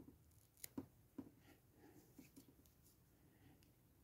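Near silence, with two faint ticks about a second in from a metal crochet hook working yarn into a stitch.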